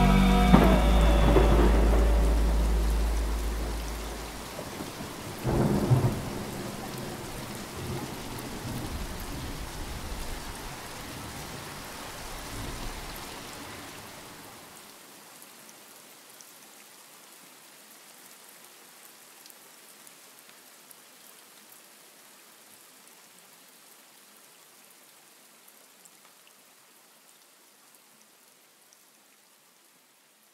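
Rain-and-thunder ambience added to a lofi rain mix. The last of the song fades out in the first few seconds, a thunderclap rumbles about six seconds in, and then steady rain slowly fades away until it is very faint by the end.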